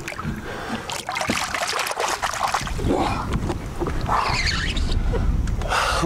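Lake water splashing and trickling against the boat's side as a musky is held in the water by hand and let go, with a low rumble building from about halfway through.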